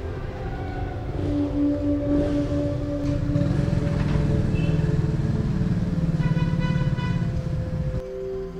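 Street sound with a motor vehicle's engine running past, its pitched drone strongest in the second half, under soft ambient music.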